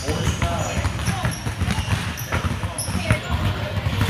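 Many basketballs being dribbled at once on a hardwood gym floor: a dense, irregular patter of overlapping bounces, several a second.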